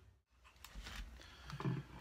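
Faint handling noise: a few light clicks and knocks as a small practice guitar amp is picked up and moved. It opens with a brief dropout to dead silence.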